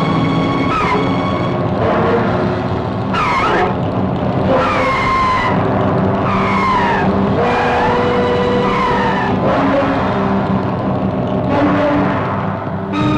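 Film soundtrack of repeated falling, screeching cries of a large bird of prey, roughly one a second, over sustained dramatic orchestral music.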